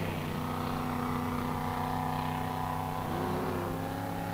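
Racing powerboat engines running at speed, a steady drone of several pitches held at a constant level.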